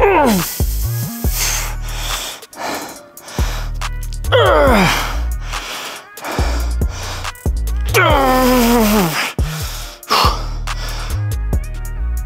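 Background music with a heavy beat, over a man's strained cries of effort during hard repetitions to failure. There are three cries, about four seconds apart, each a long call that falls steeply in pitch.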